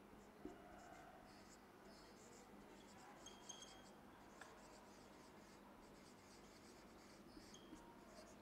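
Marker pen writing on a whiteboard: faint, intermittent squeaks and scratches as letters are drawn, over quiet room tone.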